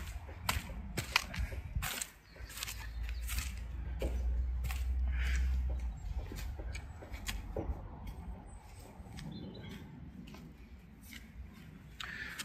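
Steel spade scraping into loose sandy loam and tipping it back into a planting hole: a run of short scrapes and soft knocks, irregularly spaced. A low rumble swells about four seconds in and fades by six.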